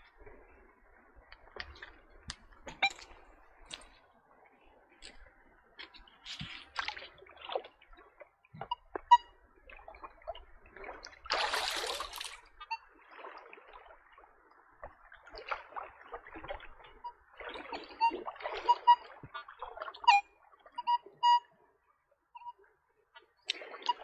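Water splashing and sloshing around legs and a digging tool wading in a shallow creek, with one louder splash about halfway through. In the second half come short, clipped beeps from a Nokta Legend metal detector.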